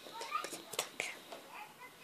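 A young child's short, high-pitched vocal squeaks and soft whispery sounds, with a few light clicks among them.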